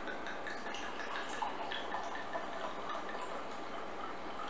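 Red wine being poured from a glass bottle into a wine glass: quiet, irregular trickling and small splashes as the glass fills.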